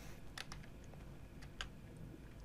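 A few faint clicks from a computer as the lecture slide is advanced, over low room hum. They come about half a second in and again past a second and a half.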